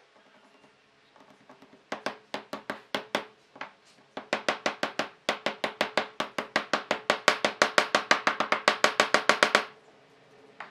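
Small mallet tapping end-grain wood discs down into their recesses in a pine tabletop. A few scattered knocks come first, then a fast, even run of several taps a second that stops suddenly near the end.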